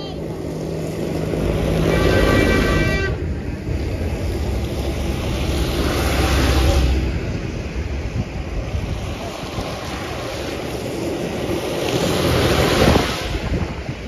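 A tractor's engine and its tyres hissing on a wet road swell as it passes close by, and a horn toots for about a second just after two seconds in. Further vehicles pass, loudest around six and thirteen seconds in.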